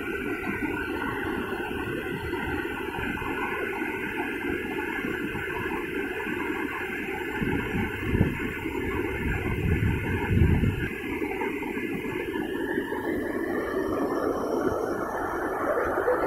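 Water gushing out of a canal tunnel outlet and rushing down a concrete channel in a steady, rumbling torrent, with a few heavier low surges. The water is being released on a trial run.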